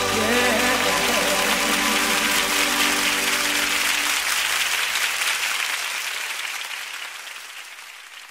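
Audience applauding at the end of a live gospel song, over the last held notes of the band, which die away about four seconds in. The applause then fades out steadily.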